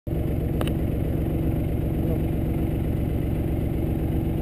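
Small utility vehicle's engine running steadily with a fast, even putter, and a brief click about half a second in.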